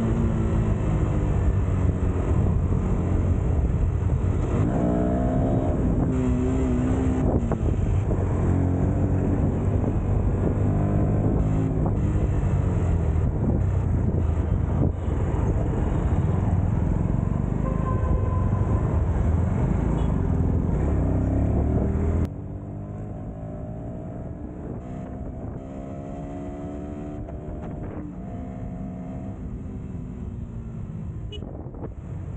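Motorcycle engine and riding noise heard from the rider's seat in traffic, the engine's pitch rising and falling with the throttle. About 22 seconds in, the sound drops suddenly to a quieter level, and the engine is heard climbing in pitch several times as it accelerates.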